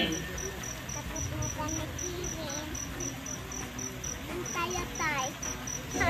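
A cricket chirping in short, evenly spaced high-pitched pulses, about three a second, with faint voices in the background.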